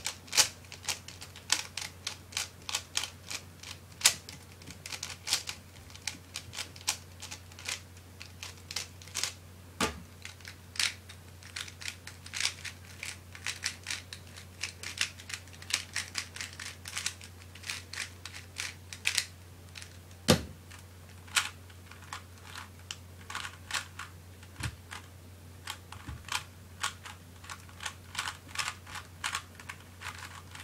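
Factory-condition plastic 3x3 speedcubes (a Dayan Guhong, then a Fangshi Shuangren) turned fast by hand in a speedsolve: rapid runs of sharp plastic clicks and clacks with short pauses between them. An occasional duller knock, the loudest about twenty seconds in, and a steady low hum under it all.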